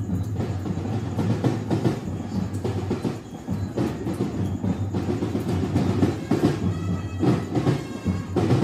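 Street band music at a fiesta: drums keeping a steady beat under band instruments playing.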